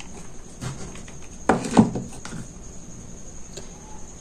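Quiet handling noises of hot-gluing a ribbon strip with a hot glue gun, with two short, sharp knocks about a second and a half in, over a faint steady high-pitched tone.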